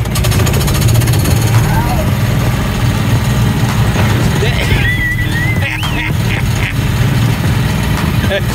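Small engine of a track-guided amusement-park ride car running steadily under throttle, a low rumble with a rapid pulse.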